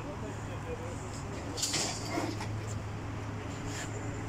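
Steady low machine hum from the animal-ambulance truck and its tail-lift equipment, with a short hissing burst about a second and a half in and a shorter one near the end.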